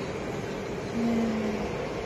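Distant city traffic heard from high above, a steady rumbling hum, with a short steady low tone about a second in.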